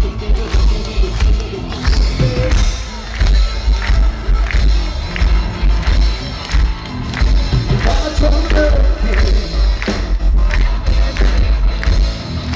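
Live rock band playing loud, recorded from within the audience: heavy bass, a steady drumbeat and a singer's voice.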